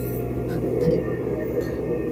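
A steady low rumble with a faint steady hum under it.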